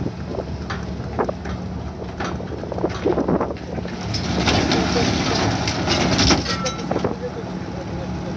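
Hydraulic excavator's diesel engine running steadily while its arm works on an old wooden fishing boat being broken up, with scattered knocks and a louder noisy stretch past the middle.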